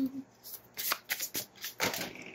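Tarot cards being shuffled by hand: a run of short, papery strokes at uneven spacing, the strongest near the end.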